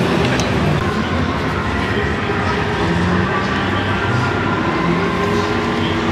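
Steady din of a crowded exhibition hall: many voices blurred together with the hall's echo.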